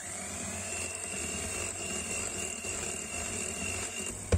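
Electric hand mixer running steadily, its beaters whipping a bowl of cream. Its whine rises in pitch as the motor spins up at the start, holds steady, and stops at the end.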